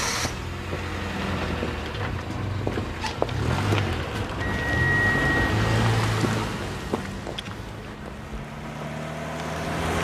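A car engine running as the car pulls away, getting louder towards the middle and then fading, under background music.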